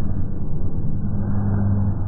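Muffled, distorted din of a live stadium concert as caught by a phone high in the stands: a deep bass note from the sound system swells about a second in over a dense crowd rumble, with little heard above the low end.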